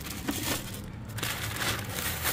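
Plastic grocery bags crinkling and rustling as they are handled and packed into a portable fridge, with a few light clicks and knocks.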